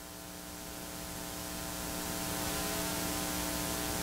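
Steady electrical mains hum with hiss, growing gradually louder over the first couple of seconds and then holding level.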